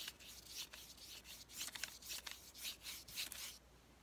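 Paintbrush with a little water scrubbing back and forth across painted chipboard, a run of short hissy strokes about three a second, stopping shortly before the end. The brushing blends out the harsh stamped lines.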